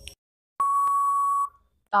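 Quiz countdown-timer sound effect: the last short tick, then about half a second in one steady electronic beep lasting about a second and fading, marking that the time to answer is up.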